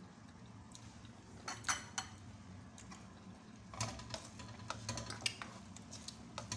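A metal spoon stirring bitter melon in a frying pan, scraping and clinking against the pan. There are a few sharp clinks about one and a half seconds in, and a busier run of clinks and scrapes in the second half.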